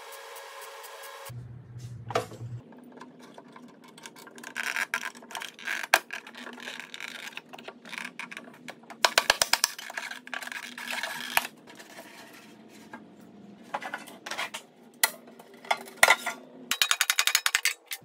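MIG welder laying a series of short tack welds on thin sheet metal: repeated brief bursts of crackling, several in quick succession, with pauses between the clusters.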